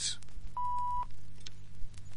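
A single short beep at one steady pitch, held about half a second and starting about half a second in, over the faint steady hum and hiss of an old soundtrack. It is the kind of cue tone that signals a filmstrip to advance to the next frame.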